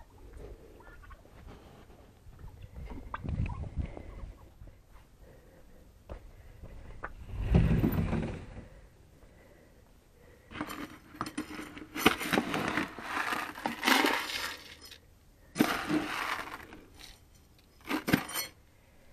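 Dry seed rattling in a plastic tub as it is scooped, in a series of rough bursts over the last several seconds. Earlier, a couple of low, dull bumps.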